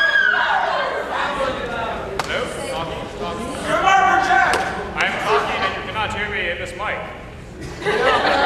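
Indistinct voices of an audience calling out and talking in an auditorium, with a few sharp knocks.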